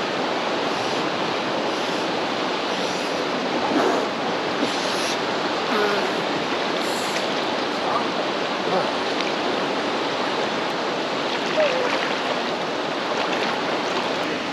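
Fast-flowing river rushing over rocks and rapids, a steady loud rush of water, with a few brief splashes and faint voices.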